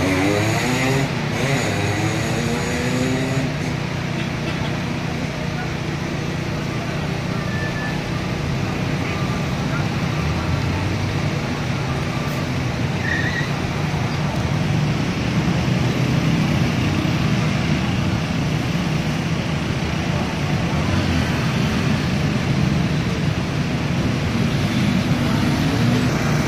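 Street traffic: cars and motorcycles passing with their engines running, in a steady mix of engine and road noise. In the first few seconds one engine revs up, its pitch rising.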